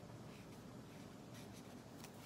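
Faint scratch of a felt-tip marker's tip on paper as colour is laid on in short strokes, two soft strokes over a low room hum.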